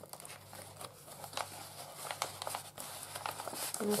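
Paper and card rustling and crinkling as the pages of a handmade paper journal are slid back into a paper belly band, with a scatter of small clicks.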